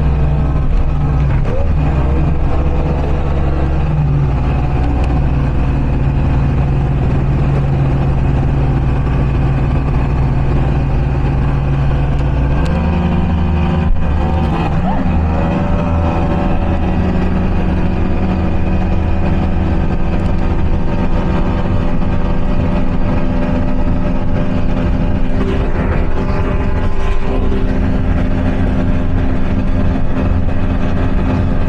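Speedboat engine running steadily while the boat is underway, over a constant rush of noise. About halfway through the engine pitch steps up and holds at the higher note.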